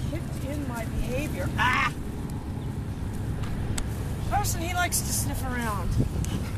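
A person's high, sing-song voice in short calls with no clear words, over a steady low rumble.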